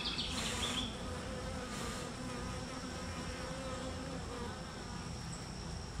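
Honey bees buzzing around an open hive and the frame of bees being held up: a steady hum with a slightly wavering pitch.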